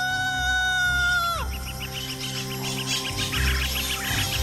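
Cartoon jungle birds calling over music: a long held call with a rising start that breaks off after about a second and a half, then rapid, repeated chirping.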